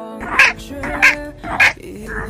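Three short barks, "wang wang wang", about half a second apart, over background music.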